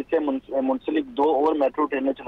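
Speech only: a man reporting in Urdu without pause, his voice thin and cut off in the highs as over a telephone line.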